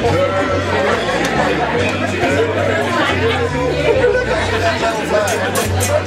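Many people chattering and laughing together in a large room over music with a stepping bass line; a run of sharp, regular ticks comes in near the end.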